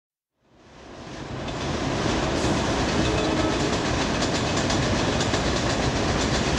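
Subway train running over an elevated steel bridge, its wheels clattering in a quick, even run of clicks over the rails. The sound fades in over the first couple of seconds and then holds steady.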